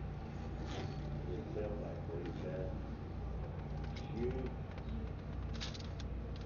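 Faint, muffled voices in short bursts over a steady low hum, with a few light clicks.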